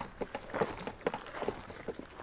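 A camel chewing grain up close to the microphone: a quick, irregular run of short, soft crunches.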